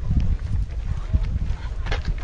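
Wind rumbling unevenly on a handheld microphone, with faint distant calls and a short sharp sound near the end.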